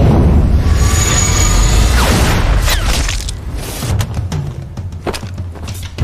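Action-film sound design: a deep boom and rumble from a sniper rifle shot under dramatic music, with falling whooshes about two seconds in and several sharp hits in the second half.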